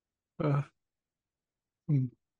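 Speech only: a man's brief "uh", then another short vocal sound near the end, with dead silence between.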